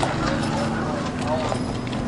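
Faint voices over steady outdoor background noise, between loud spoken passages.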